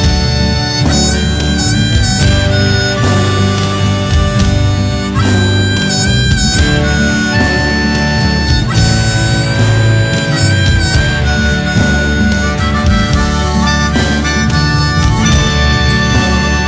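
Instrumental break of a song: a held, bending lead melody over double bass and drum kit.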